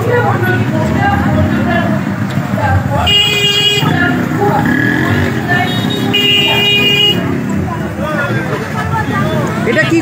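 Dense crowd chattering, with a horn tooting twice: a short blast about three seconds in and a slightly longer one about six seconds in.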